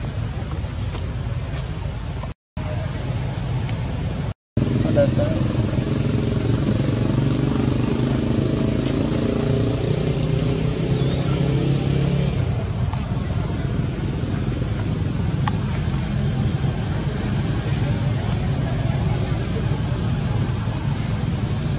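People talking in the background over a steady low rumble, the voices strongest from about four and a half seconds in; the sound cuts out briefly twice early on. No monkey calls stand out.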